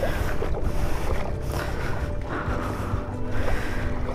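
Floodwater sloshing and rushing steadily around a Yamaha NMAX scooter as it is pushed through by hand, engine off.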